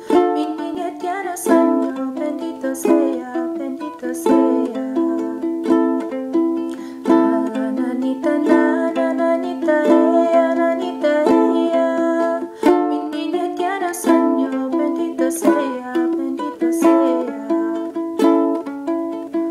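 Ukulele strummed in a steady rhythm of chords, with a stronger accented strum about every second and a half.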